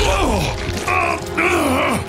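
A deep male voice groaning and grunting with strain, several effortful sounds sliding down and up in pitch, over background music.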